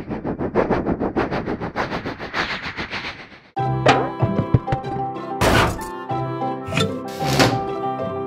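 Cartoon soundtrack: a fast run of evenly repeated beats that fades out, then a new bright tune cuts in about three and a half seconds in, with thudding hits and two loud whooshing sweeps as monster-truck tyres bounce into place.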